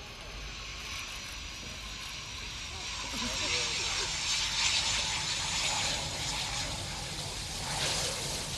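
Twin Eurojet EJ200 turbofans of a Eurofighter Typhoon running as the jet rolls out along the runway after landing: a steady hissing jet noise with a faint high whine, growing louder about three seconds in as it passes and easing slightly near the end.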